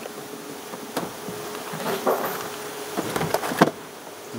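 Packaged parts being dropped into a plastic picking tote: a knock about a second in, then a cluster of knocks and rustling near the end. Under it runs a steady machine hum.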